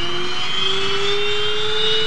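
Small jet aircraft's engines whining, the pitch rising slowly and steadily as the engines speed up, over a steady rush of noise.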